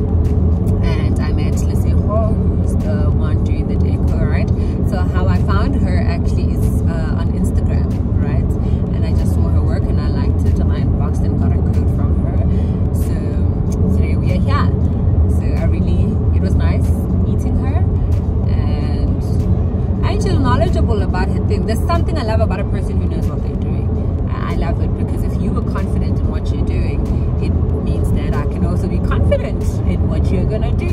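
Steady low rumble of a moving car heard from inside the cabin, with a woman talking over it throughout.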